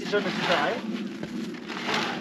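A person speaking, with a faint click about a second in.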